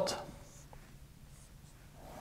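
Marker pen drawing a line on a whiteboard, faint strokes of the felt tip.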